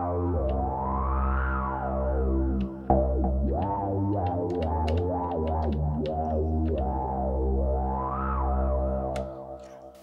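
Moog Minitaur analog bass synthesizer playing deep sustained bass notes with glide, sliding between pitches. The tone brightens and darkens in slow sweeps, and the notes fade out near the end.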